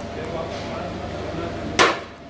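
Steady busy background, then near the end one sharp metal clank as a metal serving spatula strikes a large steel rice pot.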